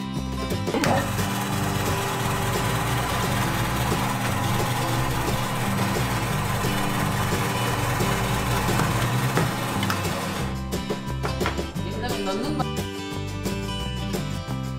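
Electric ice-shaving machine running, grinding a block of ice into fine shaved ice with a steady, coarse noise. It starts about a second in and stops at about ten and a half seconds, over background music.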